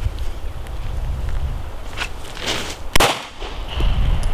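A single gunshot about three seconds in, sharp and sudden, fired at a paper and cardboard 3D training target.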